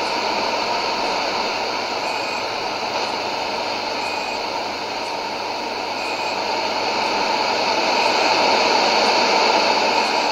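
Sony ICF-2001D shortwave receiver tuned in AM to an unidentified open carrier on 9300 kHz with dead air: no programme, only steady static hiss from the speaker. The hiss swells somewhat louder in the second half.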